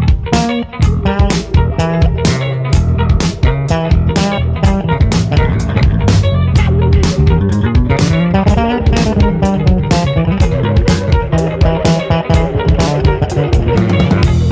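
Instrumental jazz-funk with electric guitar and bass guitar over a drum kit keeping a steady beat. About halfway through, a low note glides slowly upward for a couple of seconds.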